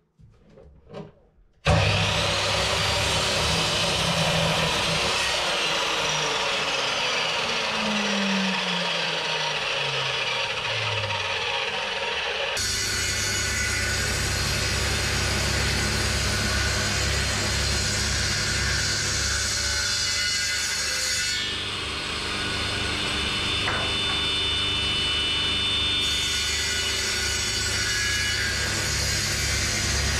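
Electric mitre saw starting suddenly and cutting wood, its motor pitch falling as it spins down. This is followed abruptly by a jointer running steadily with a pulsing low hum as a block of wood is pushed across its cutterhead.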